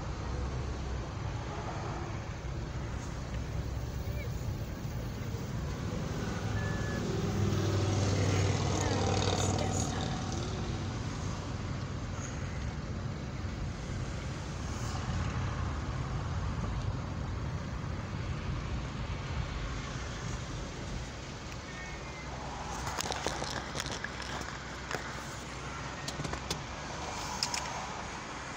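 Steady low rumble of a car on the road, engine and tyre noise heard from inside the moving vehicle, with faint voices at times.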